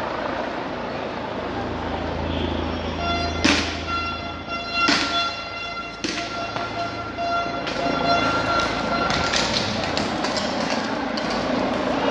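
Several sharp bangs from police grenades going off in the street, the loudest about three and a half and five seconds in, over outdoor crowd and street noise. A steady horn-like tone is held from about three seconds in until about nine and a half seconds.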